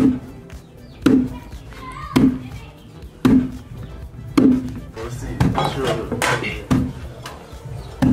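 Roasted coffee beans being pounded into powder with a heavy wooden pestle in a tall wooden mortar: a steady thud about once a second, seven strokes.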